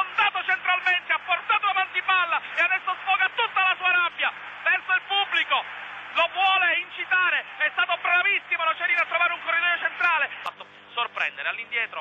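A man's voice giving rapid, continuous Italian football commentary, with a brief pause about ten seconds in.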